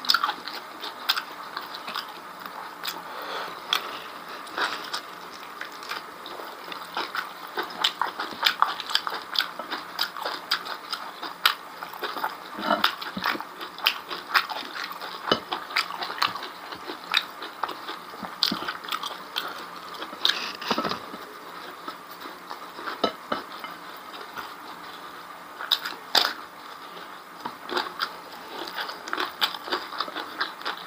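Close-miked chewing and wet lip-smacking of a person eating rice and beef tripe by hand, an irregular run of small clicks and smacks.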